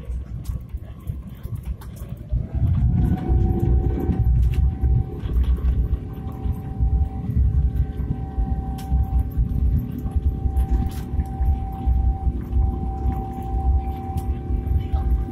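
Airbus A350's Rolls-Royce Trent XWB turbofans heard from inside the cabin, spooling up to takeoff thrust. A whine rises in pitch about two seconds in and then holds steady, while a loud low rumble builds and carries on through the takeoff roll.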